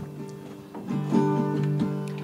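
Acoustic guitar being strummed, soft at first and growing louder about a second in.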